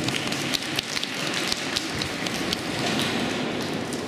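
Scattered hand clapping from a small audience, irregular sharp claps a few per second over a steady background hiss.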